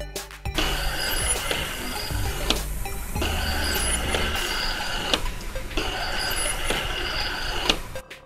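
Autofocus motor of a Nikon AF-S 600mm f/4G ED VR lens with a 1.7x teleconverter fitted, whirring as it drives focus through its range in three runs of about two seconds each. There are short pauses between the runs and sharp clicks at the end stops.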